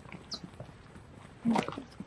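Footsteps of hiking shoes on an asphalt path: scattered light scuffs and taps as two people walk, with a brief louder noise about one and a half seconds in.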